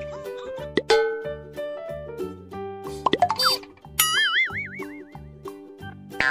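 Upbeat background music with a steady beat, overlaid with cartoon sound effects: quick sliding pitch glides about a second in and again around three seconds, then a wobbling boing from about four seconds that fades out.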